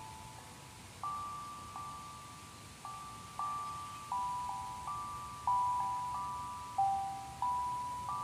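Sound bowls struck one at a time with a mallet, about a dozen clear ringing notes in a slow, wandering melody, each note fading as the next is struck.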